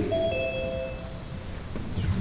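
A two-note electronic chime, a higher tone followed by a lower one, held for under a second each and overlapping, then ending about a second in.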